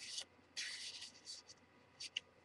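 Faint rustling and sliding of heavy paper as a folded origami paper wallet and its pockets are handled: a brief stroke at the start, then a longer one about half a second in.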